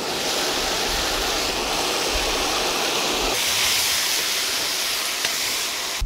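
Ingredients sizzling in hot oil in a wok, a loud steady hiss that shifts in tone about halfway through and cuts off suddenly at the end.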